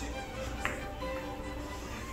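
A single sharp click from a carom billiard shot about two-thirds of a second in, over steady background music.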